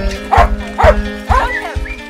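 A dog barking about three times over background music with a steady beat.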